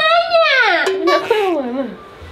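A high-pitched, drawn-out voice, wordless, sliding slowly down in pitch, with a second voice overlapping about a second in.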